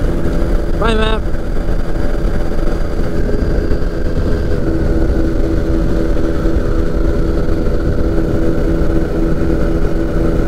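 Flexwing microlight's engine running in steady cruise, a continuous even drone with wind rushing past the open cockpit. About a second in, the pilot makes a brief voiced sound.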